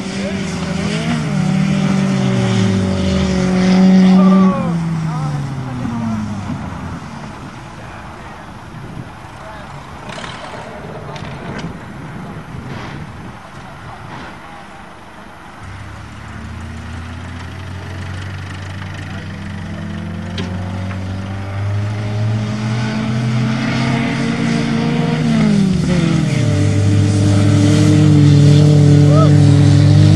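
Two small four-cylinder cars, an Eagle Talon 2.0 and an Oldsmobile Achieva 2.3 Quad 4, racing flat out across a field. Near the start they pass close and their engine pitch falls away as they pull off; after a fainter stretch the engines come back, rising in pitch and growing louder, loudest near the end.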